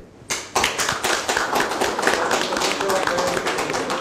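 An audience applauding. Many hands clapping at once, starting about half a second in after a brief lull, with faint voices underneath.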